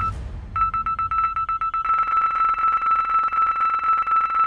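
Electronic beep tone: a short beep, then about half a second in a high tone that stutters rapidly for about a second before settling into one steady held beep.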